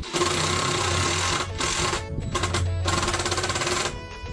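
Cordless drill running in two long bursts, about two seconds and then a second and a half, with a short break between them, driving screws into timber. Background music plays underneath.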